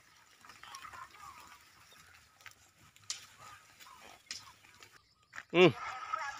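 Faint rustling with a few short, sharp clicks from a herd of goats grazing and moving through grass.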